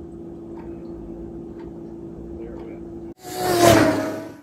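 A steady low hum with a faint held tone from race broadcast audio playing on a TV. About three seconds in it cuts off, and a loud rushing whoosh swells and fades.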